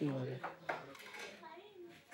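A young man's voice finishing a word, then the murmur of a busy workroom with a few light clinks.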